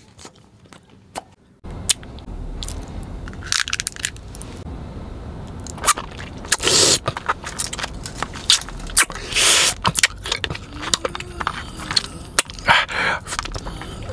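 Close-miked mouth chewing and crunching of candy. A few soft clicks, then from about two seconds in irregular crunches and clicks with longer crackly bursts every few seconds.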